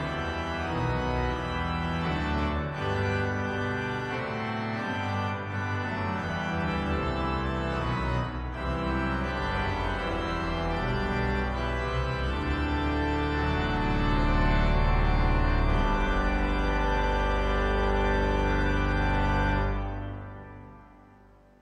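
Two-manual digital organ with pedals playing a hymn tune in full chords over a deep pedal bass. Near the end it holds a long, loud final chord, which cuts off and dies away briefly.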